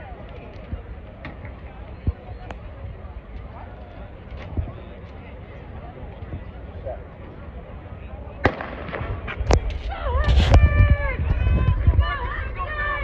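Starter's pistol fired for a sprint start: a sharp bang about ten seconds in, after a couple of smaller cracks. Spectators shout and cheer right after it, over low crowd noise.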